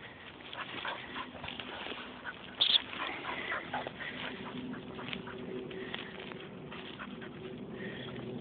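Dry, dead bracken rustling and crackling as a springer spaniel and a person on foot push through it, with a brief high squeak about two and a half seconds in.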